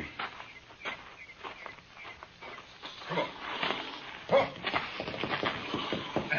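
Radio-drama sound effects of a team of horses being led off: irregular hoof clatter, with a man urging them with "come on" twice near the end.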